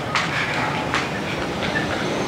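Steady outdoor street noise, a continuous rumble with no voices, broken by two brief clicks within the first second.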